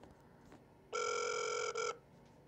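An electronic beep tone over a connected phone call on speakerphone, starting about a second in and holding steady for almost a second, with a brief break just before it stops.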